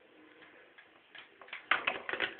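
Quiet room tone with a few faint ticks, then a quick run of sharp clicks and knocks in the last half second.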